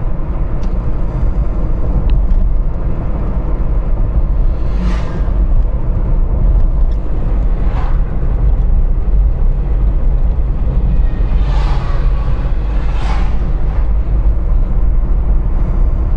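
Road and engine noise of a moving car heard from inside the cabin, a steady low rumble, with a few oncoming vehicles swishing past, the first about five seconds in and two more close together near twelve and thirteen seconds.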